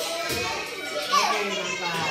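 Young children's voices chattering and calling out, unclear and not made into words, with one high child's voice rising and falling about a second in.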